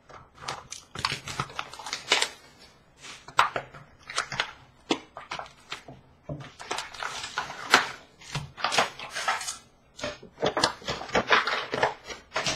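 Hockey card packs being ripped open and the cards handled: an irregular run of short crinkling and rustling sounds.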